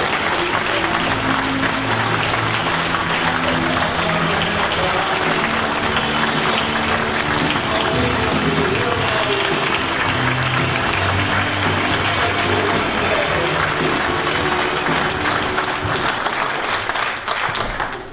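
Audience applauding, with music playing underneath. Both fade out near the end.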